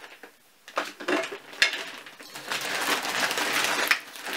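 Rustling and crinkling of a woven plastic shopping bag being rummaged through, building up over the last second and a half, with a single sharp knock about a second and a half in.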